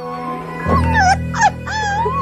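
A high voice in drawn-out, wavering notes that swoop up and down, over a backing of steady held music tones. A low drone comes in about two-thirds of a second in.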